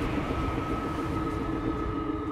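Steady low rumble with several held, unchanging droning tones, a cinematic sci-fi soundscape.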